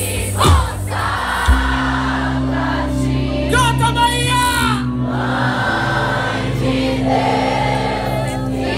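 Live Christian worship band playing through a PA: sustained low bass notes under singing, with the crowd singing along. Partway through, a voice holds a long wavering note.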